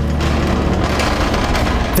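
Background music with a loud, dense rushing noise over it, a sound effect laid into the edit.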